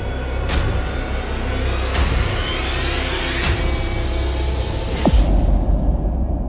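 Film score music: a deep sustained bass under a hit about every second and a half, with a rising swell that builds and cuts off abruptly about five seconds in.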